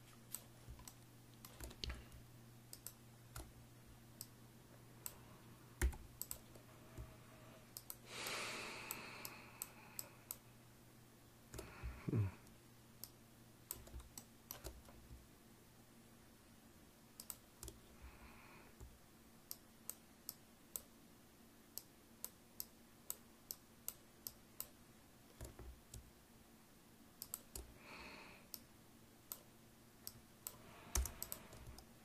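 Computer keyboard keys and mouse buttons clicking as numbers are entered and points dragged: scattered single clicks, then a quicker run of clicks from about twenty to twenty-seven seconds in. A steady low hum runs underneath.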